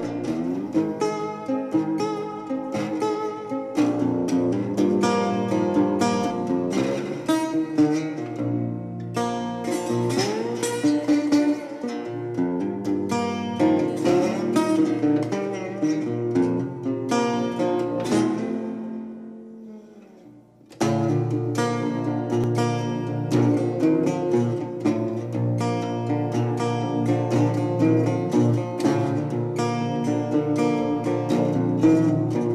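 Metal-bodied resonator guitar picked in an acoustic blues instrumental break, some notes gliding in pitch. About two-thirds of the way through the playing dies away almost to nothing, then comes back in with stronger low notes.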